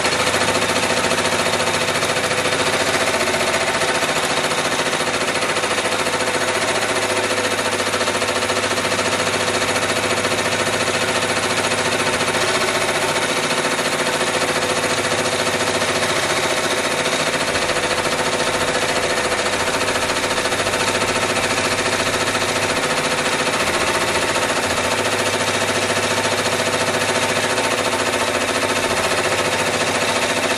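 Ricoma embroidery machine stitching at speed, a fast, even needle pulse over a motor hum, steady throughout as it sews the placement outline of a lettering design.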